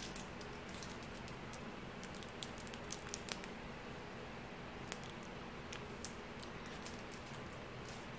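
Faint scattered crinkles and clicks of a makeup brush in its clear plastic sleeve being handled, over a steady low room hum.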